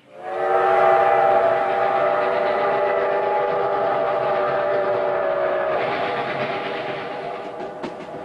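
Steam locomotive whistle sounding one long chord of several tones, starting suddenly, dipping slightly in pitch after about five seconds and then fading. Near the end the train's wheels click over the rail joints.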